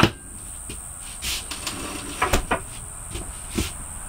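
Wooden cabinet frame knocking and shifting as it is pushed into place against the wall. There is one sharp knock at the start, a short scrape, then a few lighter knocks about halfway through and near the end.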